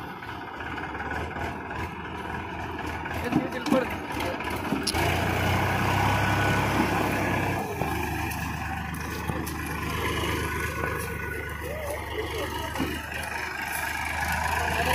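Tractor diesel engine running steadily with a low hum, becoming much louder about five seconds in.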